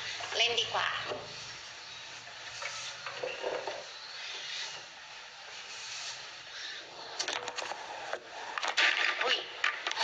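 A woman's voice for about a second, then background noise of a small room, then a run of sharp clicks and rustles in the last few seconds, loudest about a second before the end.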